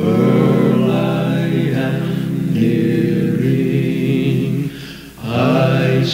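A gospel quartet singing a cappella in four-part harmony, holding long chords that change every second or two. There is a brief pause for breath about five seconds in, and then the next phrase begins.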